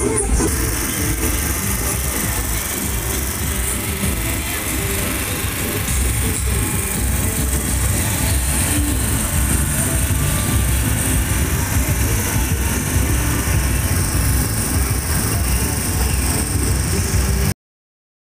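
Loud music with strong bass played from a passing carnival float's sound system, mixed with the running engine of the vehicle pulling the float. The sound cuts off suddenly near the end.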